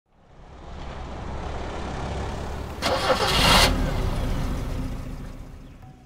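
A motor vehicle's engine that fades in, surges loudly in a brief noisy burst about three seconds in, then fades away.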